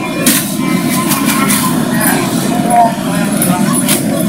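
Indistinct crowd chatter in a large, echoing convention hall, with a few sharp clicks about a third of a second in and again near the end.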